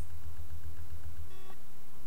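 Steady low electrical hum on the recording, with a faint short electronic beep about one and a half seconds in.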